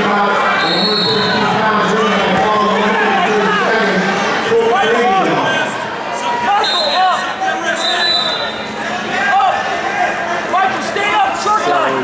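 Many overlapping voices of spectators and coaches echoing in a large gym, with a few short high-pitched tones about a second in and again around seven and eight seconds in.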